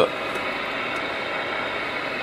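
Steady hiss of a radio receiver with no station coming in, with a few faint steady tones mixed in.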